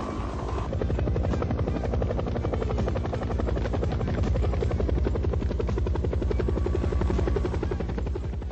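Helicopter rotor chopping in a steady, rapid beat.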